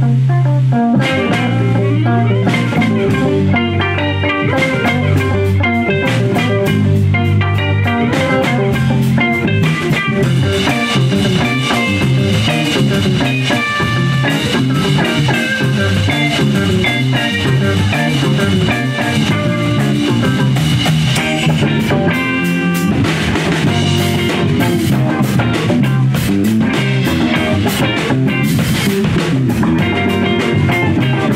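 Live instrumental rock band playing: interlocking electric guitar lines over bass guitar and drum kit, steady and loud, with a short break in the bass and drums about two-thirds of the way through before the cymbals come up.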